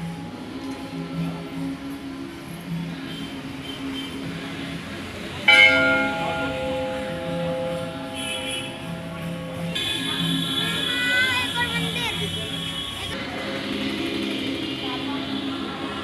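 A temple bell is struck sharply a little over five seconds in and rings on with several steady tones, fading over a few seconds; a second bell rings from about ten seconds in for roughly three seconds. Devotional music or chanting plays steadily underneath.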